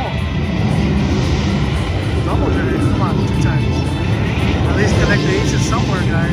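Steady casino-floor din: a constant low rumble with voices and slot-machine music and chimes, the Panda Power slot's bonus-spin sounds among them.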